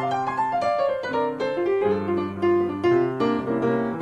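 Piano music over the titles: a falling run of notes in the first second, then chords and a melody.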